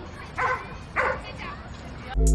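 Two short, sharp calls about half a second apart over a faint steady background hum.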